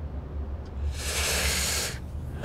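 A person's short breathy exhale: a soft hiss starting about halfway in and lasting about a second, over a steady low hum.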